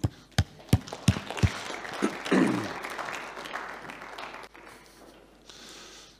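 A congregation applauding, dying away over about five seconds, with four sharp knocks in the first second and a half.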